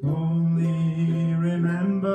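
Man's singing voice holding one long note, stepping up slightly in pitch near the end, with ukulele accompaniment.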